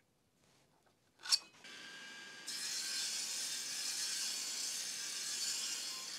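An Evolution sliding mitre saw cutting through a rough-sawn dark ash board: a sharp click about a second in, then the saw starts up and runs steadily, growing louder as it cuts from about two and a half seconds in.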